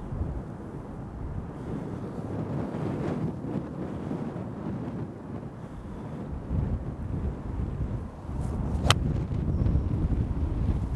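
Wind buffeting the microphone, then near the end a single sharp crack of a 6-iron striking a golf ball off the turf.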